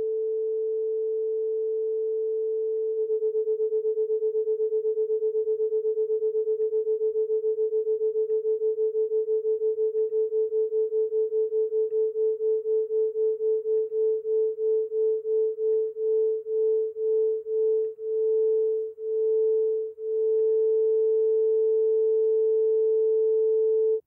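Pure sine tones from an online tone generator: a steady 440 Hz tone, joined about three seconds in by a 432 Hz tone that makes a fast warbling beat of about eight pulses a second. As the second tone is raised toward 440 Hz the pulses slow and spread out, then stop, leaving one steady tone in unison for the last few seconds.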